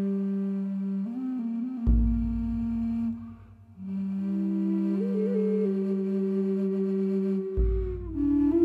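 Large low-pitched mahogany Native American-style flute playing long held notes with small ornamental steps, a short breath pause partway through, and a higher harmony line layered over it. Two deep drum hits from a big bodhran played as a hand drum land about two seconds in and near the end, each ringing on under the flute.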